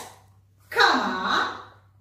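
A woman's voice speaking one short phrase, lasting about a second, after a brief silence.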